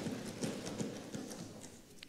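Members thumping their desks in approval: a scattered run of knocks that thins out and dies away near the end.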